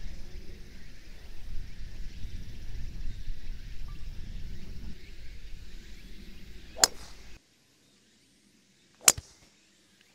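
Wind rumbling on the microphone, then the sharp crack of a driver striking a golf ball off the tee, hit slightly toward the heel. A second, louder crack of the same kind of impact follows about two seconds later.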